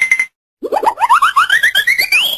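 Cartoon comedy sound effect: a brief steady beep, then, about half a second later, a rapid run of short rising boing-like chirps, each pitched higher than the last, climbing steadily.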